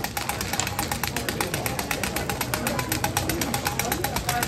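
A broad hand blade chopping thin rods of hard candy into small pieces on a steel bench: a fast, even run of sharp clicks.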